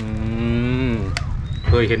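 A person's voice holding one long, drawn-out vowel for about a second, steady in pitch and then dropping at its end, followed by a single sharp click, and speech begins near the end.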